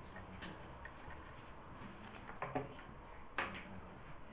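Quiet room with a few faint, irregularly spaced clicks and taps.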